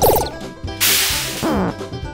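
Background music with cartoon sound effects laid over it: a quick falling whistle-like glide at the start, a loud whoosh about a second in, then a falling tone.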